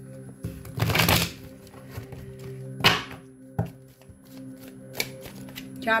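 A deck of oracle cards being shuffled by hand: a long rustling riffle about a second in, then a few sharp card snaps. Soft, steady background music plays underneath.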